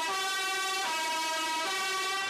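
Two-tone emergency vehicle siren alternating between a high and a low note, each held for a little under a second.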